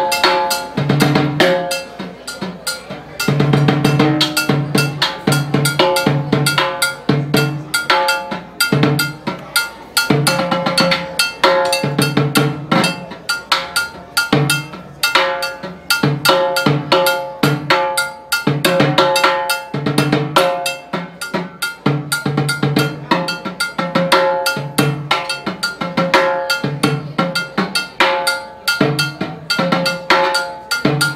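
Solo timbales played with sticks: LP steel-shelled timbales and a mounted red block struck in dense, fast strokes, with the drums' ringing pitches running through. The playing shows limb independence, one hand keeping a clave pattern while the other improvises across the drums.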